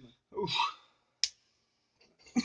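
A short vocal sound from a person, then a single sharp click just over a second in.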